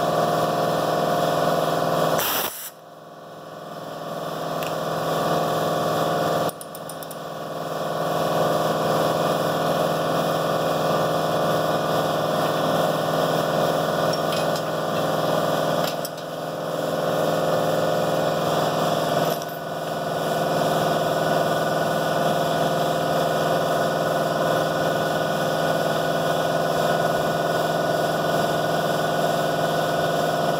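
Pneumatic air ratchet running almost without pause, a steady whirring hiss, as it turns bolts; it cuts out briefly about 2.5 and 6.5 seconds in, and dips twice more later.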